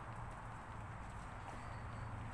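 Faint, steady low background hum with no distinct events.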